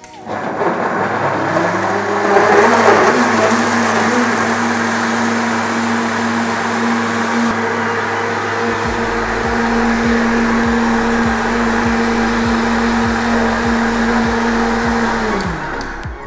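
Countertop blender motor spinning up and running steadily as it purées tomatoes, red bell peppers, habanero and onion with water into a very smooth pepper mix. It is louder and rougher for the first few seconds while the chunks break up, then evens out, and winds down near the end.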